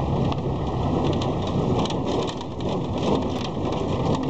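Pickup truck driving over a rough unpaved road, heard from the open bed: a steady rushing noise full of small rattles and knocks.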